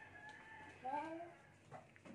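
A faint, drawn-out call holding one steady pitch through the first second, with a short spoken word over it about a second in.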